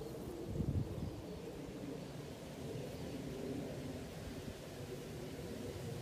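Faint outdoor background rumble in an open field, with a brief louder low bump just under a second in.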